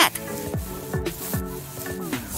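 Paintbrush rubbing paint over a carved polystyrene foam panel, a steady scrubbing noise, with background music.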